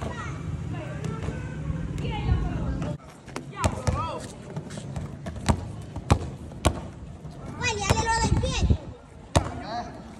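Skateboard wheels rolling on pavement for about three seconds, stopping abruptly, then a series of about six sharp clacks and knocks of skateboards hitting the ground, with children's voices.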